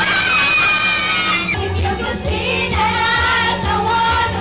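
Karaoke: young women singing into a handheld microphone over a pop backing track. One voice holds a long high note for the first second and a half or so, then the singing carries on over a steady bass line.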